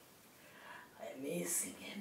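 A man's voice speaking softly, almost in a whisper, starting about a second in.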